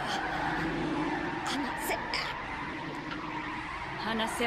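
Anime scene audio: a character's voice speaking quietly over a steady, sustained background tone.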